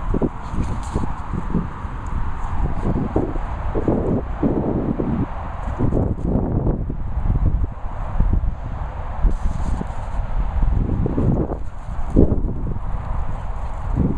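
Wind buffeting a handheld phone's microphone, with irregular thumps and rustles of walking on grass.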